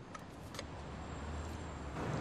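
Pendulum skid resistance tester swinging: a few light clicks from its release and pointer in the first second as the arm swings down and its rubber shoe drags across sandstone paving, over a low steady rumble.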